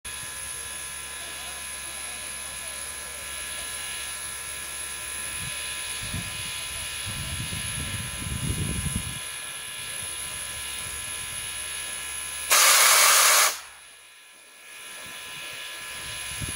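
A Soviet L-class steam locomotive standing with a steady steam hiss. About twelve seconds in, its whistle gives a single short blast lasting about a second, loud enough to overload the recording.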